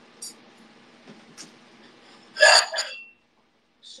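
Casafina ceramic plates being handled and set down, with a couple of faint clicks and then one loud double clatter about two and a half seconds in, followed by a brief ring.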